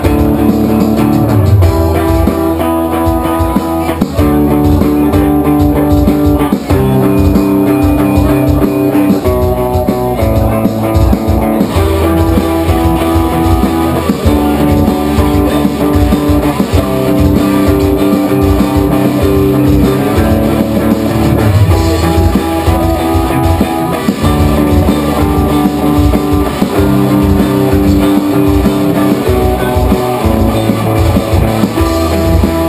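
Live rock band playing an instrumental passage: electric guitars holding and changing chords over electric bass and a drum kit, loud and steady throughout.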